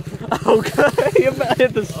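Voices talking over a dirt bike engine running steadily.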